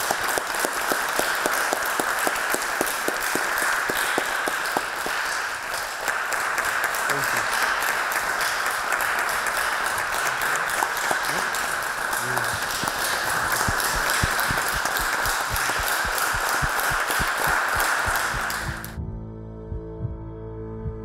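Audience applauding steadily for about nineteen seconds, the clapping cut off suddenly near the end as soft ambient music begins.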